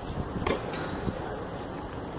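Steady wind buffeting the microphone at an outdoor tennis court, with a few short knocks about half a second to a second in.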